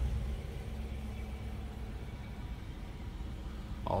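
5.7-litre Hemi V8 of a 2016 Dodge Durango idling, heard from inside the cabin as a steady low hum.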